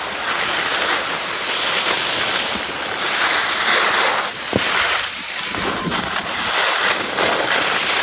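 Skis hissing and scraping over packed snow, the sound swelling and easing about every two seconds with each turn, mixed with wind on the microphone.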